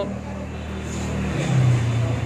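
A motor vehicle's engine running, a low steady hum whose note changes about a second and a half in.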